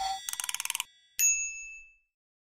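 Electronic logo sting: a rapid run of ticks lasting about half a second, then a single bright bell-like ding a second in that rings and fades away.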